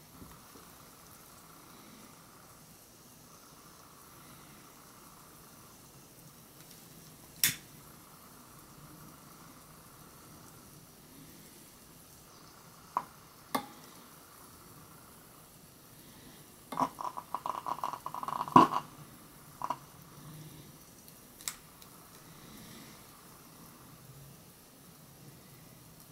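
Calcium metal fizzing quietly in a beaker of water as it gives off hydrogen, with a few single sharp clicks and pops. About two thirds of the way in, a run of rapid crackling pops as a lighter flame held over the beaker ignites the hydrogen.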